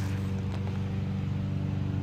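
A steady low mechanical hum from a running motor or engine, holding one even pitch throughout.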